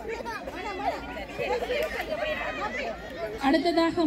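Several voices chattering and overlapping at once; near the end one louder voice starts speaking over them.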